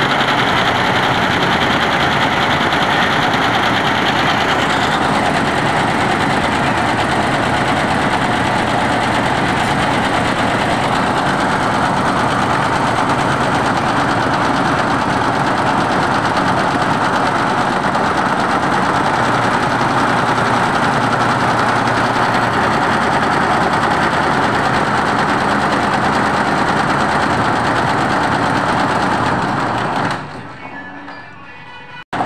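Multi-needle computerized embroidery machine stitching at speed: a steady, rapid mechanical chatter of the needle bar and hoop drive that stops right at the end.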